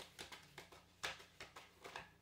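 A tarot deck being shuffled by hand, overhand: a faint, irregular run of soft card slaps and flicks, about three or four a second, that stops at the end.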